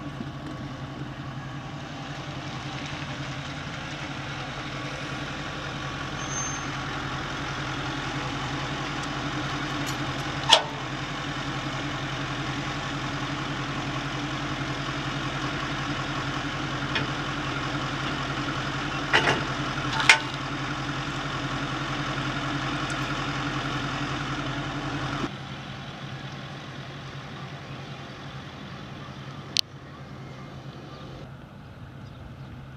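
Ford Super Duty pickup truck engine idling steadily, with sharp metal clanks about ten seconds in and twice near twenty seconds as the tow bar is coupled to its front hitch. The engine sound drops sharply a few seconds before the end.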